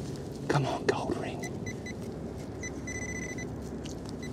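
Handheld metal-detecting pinpointer probing wet mud, giving short high beeps that run together into a steady tone for about half a second and then pulse again: it is right over a buried metal target, a small lead pistol shot. A few faint scrapes of the probe in the mud come in the first second.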